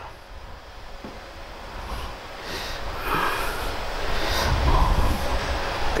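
Cables and plugs being handled at a mixing console: rustling and knocking with a low rumble, quiet at first and building from about two seconds in, loudest past the middle.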